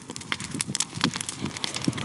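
Large wood bonfire crackling, with irregular sharp snaps and pops from the burning branches.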